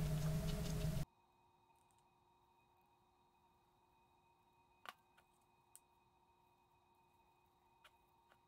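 A steady low room hum that cuts out abruptly about a second in, leaving near silence with a single faint click about five seconds in.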